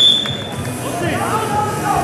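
A referee's whistle blown once, a short steady high tone of about half a second, signalling the restart of the wrestling bout after a stoppage.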